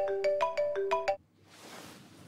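Mobile phone ringtone playing a quick melody of struck notes. It cuts off suddenly about a second in as the call is answered.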